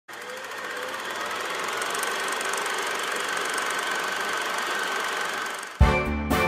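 Film projector sound effect: a steady mechanical whirr with a fast, fine clatter. It cuts off near the end, when music on double bass starts abruptly.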